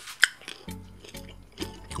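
A sharp crunch about a quarter second in as a milk-chocolate-coated peanut is bitten, then a low, steady closed-mouth "mmm" hum while chewing.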